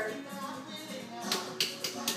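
Hand slapping a raw, freshly washed whole turkey: three sharp slaps in quick succession in the second half, over background music.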